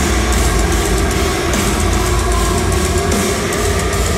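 Metalcore band playing live at full volume: distorted electric guitar over heavy bass and drums, dense and unbroken, recorded from within the crowd.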